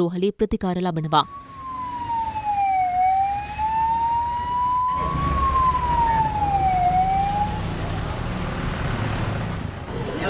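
Ambulance siren in a slow wail, the pitch falling and rising over about four seconds per cycle, over low vehicle noise. It stops a little after halfway. A brief stretch of narration speech comes at the start.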